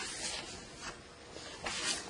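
Sheets of paper being handled and shuffled, a few short rustling swishes with the loudest near the end.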